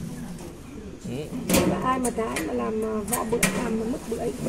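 Mostly a person's voice, starting about a second in, with a few sharp clicks or knocks during the second half and a low steady hum underneath.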